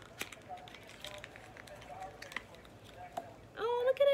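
Light handling noise of a tiny fragrance sample package being opened by hand: scattered soft clicks, taps and rustles as the small bottle is taken out.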